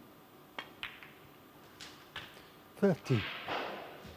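Snooker shot: a couple of sharp clicks as the cue strikes the cue ball and the cue ball hits a red, then softer knocks as the red is potted. Near the end a brief voice sound, the loudest part, falling in pitch.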